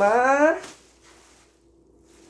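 A man's voice drawing out a rising, sung 'maaa' for about half a second, then quiet with a faint crinkle of the plastic garbage bag he is wearing.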